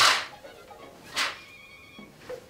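Two quick swishes of a fabric curtain being pulled across a window, the first at the start and the second about a second later.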